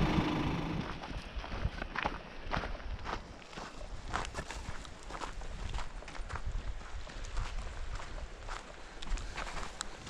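Footsteps on a gravel and dirt path, a steady walking pace of about two steps a second.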